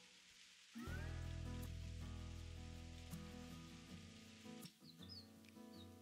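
Quiet background guitar music, starting about a second in after a brief gap and fading toward the end.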